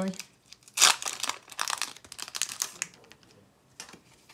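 Foil wrapper of a Pokémon TCG booster pack crinkling and tearing as it is opened, in loud crackling bursts close to the microphone. The loudest burst comes about a second in, and the sound dies down after about three seconds.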